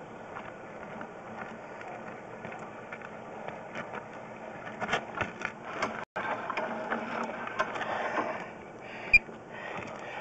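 Sewer inspection camera's push cable and reel clicking and rattling as the camera head is pushed forward along the pipe, busier and louder from about halfway, with one sharp click near the end.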